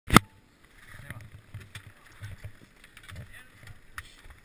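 Action camera handling noise: a sharp loud knock at the very start, then irregular low bumps and scattered small clicks as the camera is moved around.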